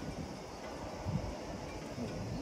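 Wind buffeting the microphone: an uneven low rumble over faint outdoor background noise.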